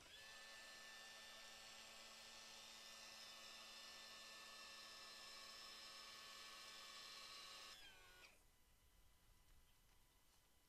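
Electric motor driving a hydraulic pump, running with a steady whine as it lowers an outboard motor bracket. It runs for about eight seconds, then cuts off, its pitch dropping briefly as it spins down.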